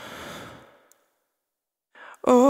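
A single audible breath, a sigh-like rush of air that fades out about a second in.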